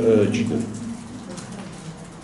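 A man's low voice speaking, breaking off about half a second in, followed by a pause with only faint room hum.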